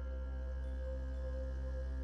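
Quiet ambient background music of steady, unchanging held tones.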